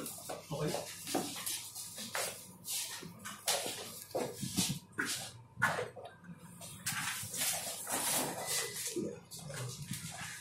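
Indistinct voices of people talking, in irregular bursts with scattered sharp knocks.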